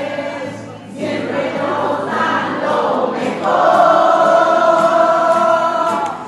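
A large group of voices singing together, with a brief break just before a second in and a long held note through the last two and a half seconds.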